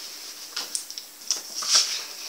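A few brief, soft rustles of a paper envelope being handled, over a faint steady hum.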